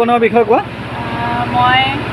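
Speech with voices talking over a steady, low, pulsing mechanical hum like a running motor.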